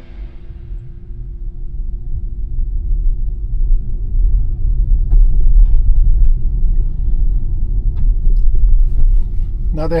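Low rumble of road and tyre noise inside a Tesla Model Y's cabin while it is driving, with a faint steady hum and a few soft clicks.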